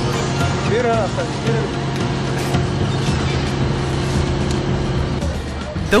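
Steady drone of a fishing boat's engine, with brief calls or shouts about a second in.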